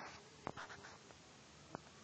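Two faint taps of a fingertip on a phone's touchscreen, one about half a second in and a smaller one near the end, over near silence.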